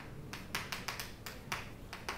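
Chalk writing on a chalkboard: a quick, irregular run of sharp taps and ticks as the strokes land on the board.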